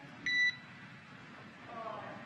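A single short electronic beep, about a quarter second long, on the radio communications loop just after a transmission ends. Low radio hiss follows.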